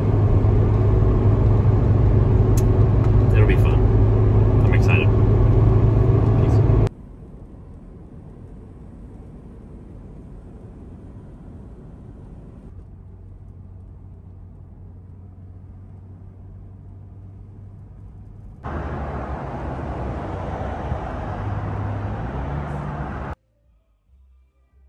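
Car cabin noise while driving: a steady low engine and road drone. It drops abruptly to a much quieter level about seven seconds in, comes back louder about nineteen seconds in, and cuts off suddenly just before the end.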